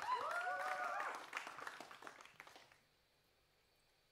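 Audience applause with one voice cheering in a rising, then held call at the start; the clapping thins out and dies away under three seconds in.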